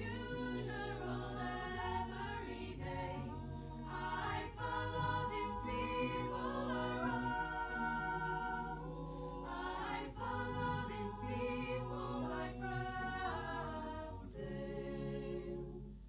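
Mixed a cappella choir of women's and men's voices singing without accompaniment, holding sustained chords that shift from one to the next, with low men's notes beneath the higher parts. The singing grows softer near the end.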